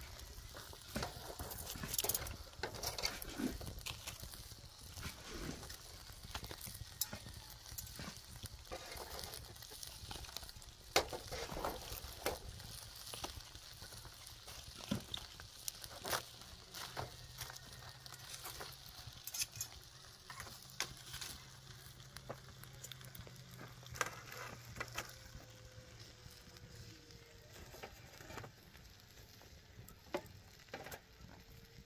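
Long metal tongs poking and raking a tray of glowing charcoal with foil-wrapped fish buried in the coals: scattered clicks and scrapes of metal on coals and foil, with faint crackling.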